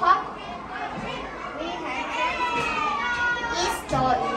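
Children's voices talking, the words indistinct.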